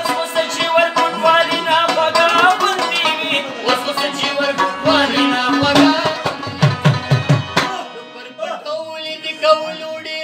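Live Pashto folk music: harmoniums playing a sustained melody with male singing and tabla strokes. The music thins out briefly about eight seconds in, then a held harmonium note carries on.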